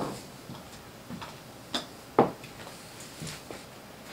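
A few faint short taps and clicks, the sharpest about two seconds in.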